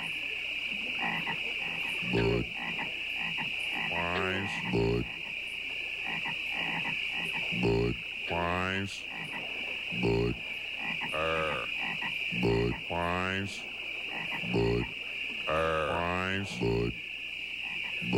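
Frogs croaking one at a time, about a dozen croaks, some short and low, others longer and rising in pitch, sounding out the syllables 'Bud', 'weis', 'er'. They sound over a steady high-pitched chorus of night insects.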